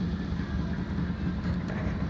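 1974 Kawasaki H1 500cc three-cylinder two-stroke idling steadily through its three expansion-chamber exhausts.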